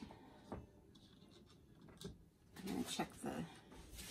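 Two light knocks of plastic paint cups being set down on a wooden work table, about half a second and two seconds in, against quiet room tone.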